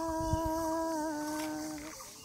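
A woman singing unaccompanied, holding one long note that steps down slightly in pitch about halfway and fades away near the end.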